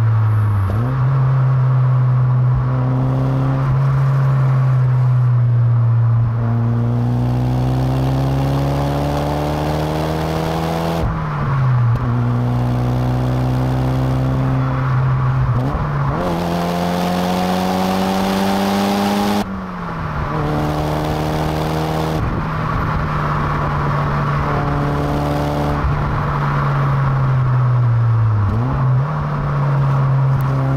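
Toyota Celica GT-Four ST205's turbocharged 2.0-litre four-cylinder engine pulling hard through the gears. The pitch climbs steadily and drops sharply at each upshift, twice, over wind and road noise.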